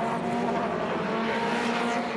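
Small-capacity (under 1350 cc) Grand Prix Midget race-car engine running on track at a steady note.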